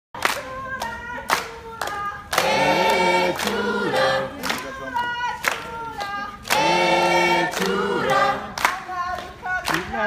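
Intro jingle of a cappella choir singing, with hand claps keeping a beat of about two a second and two longer held chords about two and a half and six and a half seconds in.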